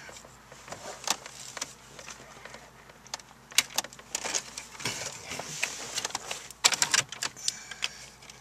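Plastic wiring connectors and a cloth-wrapped harness clicking and rattling as they are handled and unplugged from the back of a car stereo. Irregular clicks and small rattles, with a quick cluster of them a little before the end.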